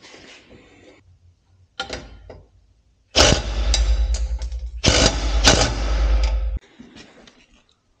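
Handheld cordless power driver spinning a bolt through a steel tractor step bracket in two runs of a few seconds, with a short break between them, while the nut is held with a wrench.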